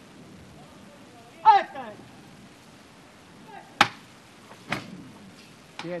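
A short shouted call, then a single sharp knock about two seconds later, followed by two fainter knocks.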